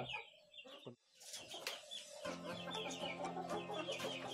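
Bangkok chickens clucking faintly, starting about a second in after a brief near-silent moment.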